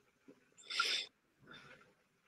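A person's sharp breath or sniff close to the microphone, followed about half a second later by a softer breath.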